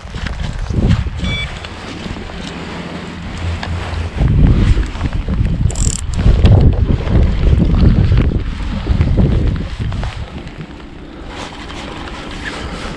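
Wind buffeting the microphone of a body-worn action camera, a heavy uneven rumble that surges loudest from about four to nine seconds in. Clothing rustle and handling knocks come through as the rod and reel are picked up.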